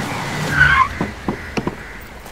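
A police car's tyres squealing as it brakes hard to a stop, loudest about half a second in, followed by a few short knocks as its doors open.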